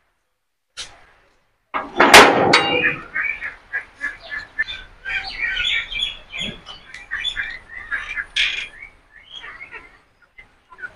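Birds chirping outdoors, many short high calls in quick succession, after a sudden loud clatter about two seconds in.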